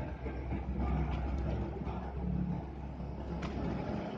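A motor vehicle's engine idling, a steady low rumble under general outdoor background noise.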